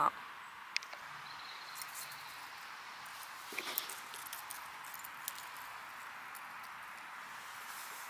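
Faint steady outdoor hiss with a few soft clicks and a brief rustle about three and a half seconds in, as pieces of crushed eggshell are dropped by hand onto soil around seedlings.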